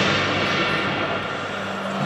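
A live rock band's electric guitar and amplifiers ringing on in sustained notes over a wash of noise, slowly fading with no new drum hits.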